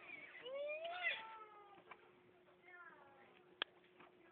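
Elmo's high-pitched voice played from an Elmo Live Encore toy's in-box demo, in short gliding calls, loudest in the first second or so. A single sharp click near the end.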